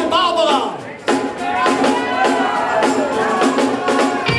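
Rock band music with singing and drums. The music thins out briefly just before a second in, then comes back in sharply on a steady beat.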